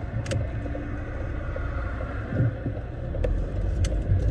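Car engine and cabin rumble heard from inside the car, a steady low drone that grows louder near the end. A few light clicks and rustles sound over it, the loudest just after the start and near the end.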